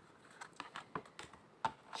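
A few light, irregular clicks and taps from handling a round tarot card on a table, fingernails and card edge knocking lightly; the loudest tap comes near the end.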